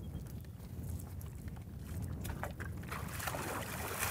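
Water sloshing and splashing as a horse paws and steps in shallow pond water, over a low rumble of wind on the microphone.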